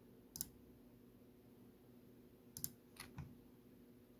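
Faint clicks of a computer mouse against near silence: one single click, then a quick double click a little past two and a half seconds in, followed by two more clicks.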